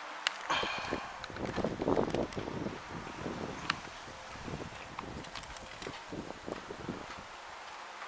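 Irregular close knocks, scrapes and rustles, densest in the first three seconds, then thinning to scattered sharp clicks and taps.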